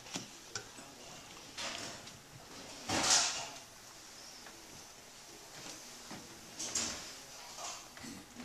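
Quiet room sounds of a few people at a table: scattered light clicks and small handling noises, with one louder brief noisy burst about three seconds in.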